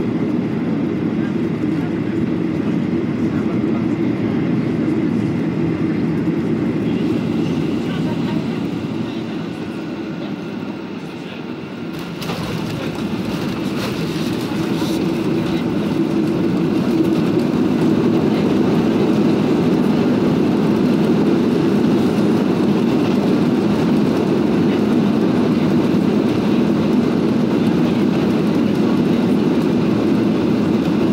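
Airliner cabin noise heard from a window seat during landing: a steady rumble on final approach, and a sudden change about twelve seconds in as the wheels touch down. Then comes a louder, steady rumble as the airliner rolls and slows down the runway with its wing spoilers raised.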